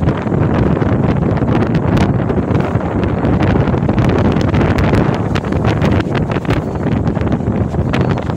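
Strong sea wind buffeting the microphone in a loud, steady rumble, with breaking surf beneath it.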